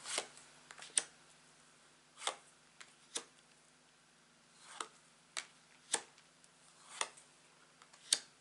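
Tarot cards being slid off the front of a hand-held deck one at a time, each making a short snap or flick, about one a second with irregular gaps.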